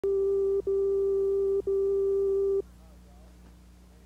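A steady electronic beep tone at one fixed pitch, broken twice by very short gaps, that cuts off about two and a half seconds in, leaving a faint low hum.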